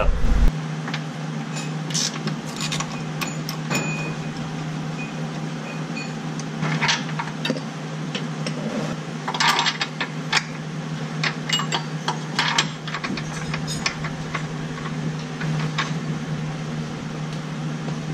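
Scattered metallic clinks and clicks of hand tools and bolts being worked on a car's undercarriage, with a few short high pings around four to six seconds in, over a steady low hum.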